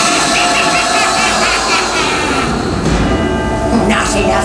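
The water show's soundtrack played loud over outdoor speakers: sustained music mixed with a rumbling sound effect, the low rumble swelling in the last couple of seconds.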